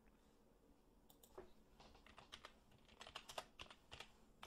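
Faint typing on a computer keyboard: a quick run of separate keystrokes starting about a second in.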